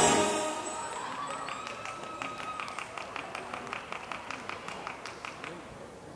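An electronic pop backing track cuts off at the very start, followed by audience clapping at about four to five claps a second.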